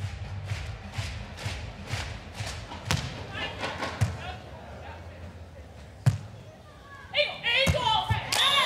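A volleyball struck by hand in a rally: three sharp slaps, about a second and then two seconds apart, for the serve, the pass and the attack. Voices break in near the end.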